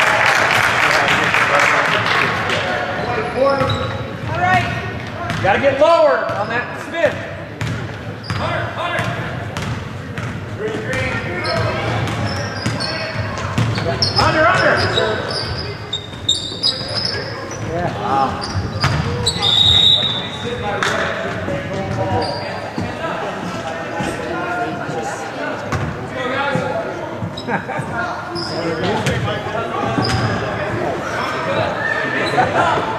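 Basketball game sounds in a large gym: a ball bouncing on the hardwood floor, with knocks and short squeaks from play and the voices of players and spectators echoing in the hall.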